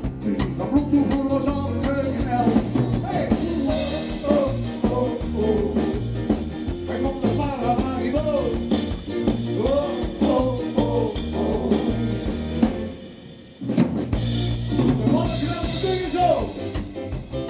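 Live band playing: drum kit and electric guitars with singing over them. The music breaks off for about a second near the end, then the band comes back in.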